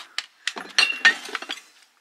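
China plates clinking against each other as a flow blue plate is set into a cardboard box among other dishes: a few light clicks, then a short flurry of clinks with a brief ring about a second in.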